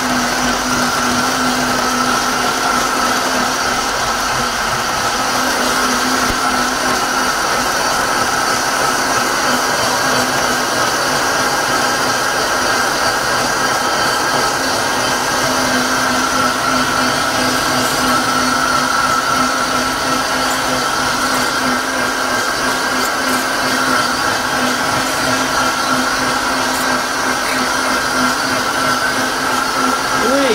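Vitamix Ascent A3500 blender running its smoothie preset program, blending a full jar of greens and frozen fruit: a loud, steady whir with a constant motor whine that swells and eases a little over the run.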